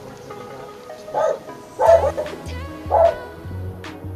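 Background music with a steady bass beat, and three short, loud dog barks over it, about a second apart.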